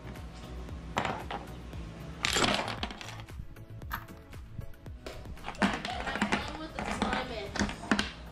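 Chess pieces clattering and clacking against a wooden chessboard as they are knocked over and pushed together by hand: a scatter of sharp knocks that come thicker in the second half.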